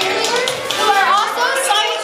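Many overlapping voices, mostly children's, talking and calling out at once in a large, echoing hall.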